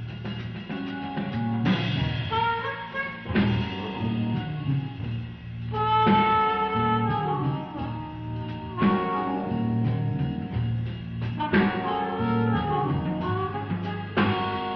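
Blues band playing live: amplified harmonica, cupped against a microphone, plays held, bending notes in phrases over drum kit, bass and electric guitar.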